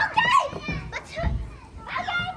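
Young children's high-pitched voices at a playground: wordless chatter and short calls, one after another.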